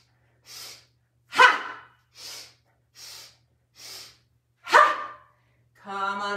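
A woman's breath-of-joy breathing: quick sniffs in through the nose, three to a round, each round ending in a loud, forceful voiced "ha" exhaled through the mouth. A single sniff leads into a "ha" about a second and a half in, then three sniffs lead into another "ha" near five seconds.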